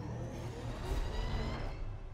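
Mechagodzilla's machinery in a film soundtrack: a rising mechanical whine over a low rumble, fading out near the end.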